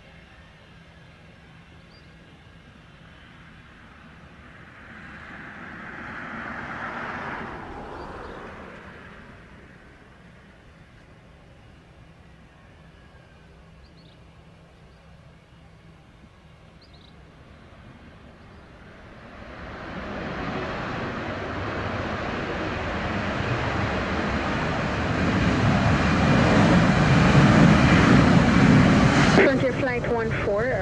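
Frontier Airlines Airbus A320-family jet landing, its engines spooled up in reverse thrust. The roar builds from about two-thirds of the way through, is loudest just before it cuts off near the end, and follows a fainter swell of engine noise a few seconds in.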